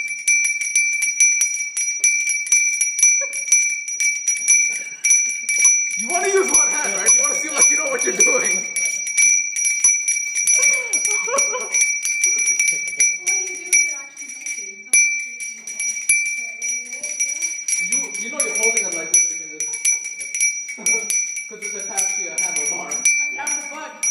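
Several bicycle bells being rung over and over at once: a steady high ringing kept up by rapid, dense strikes that never let up.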